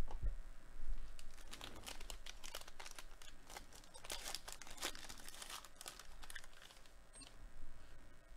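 Plastic wrapper of a football trading-card pack being torn open and crinkled by hand, a few seconds of dense crackling and ripping. A dull thump right at the start is the loudest sound.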